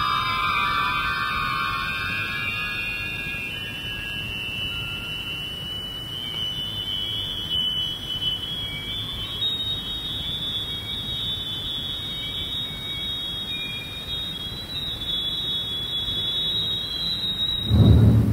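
Electronic whistling tones glide slowly upward in pitch, then hold a high steady tone that creeps higher, over a steady low noise. A loud low thump comes just before the end.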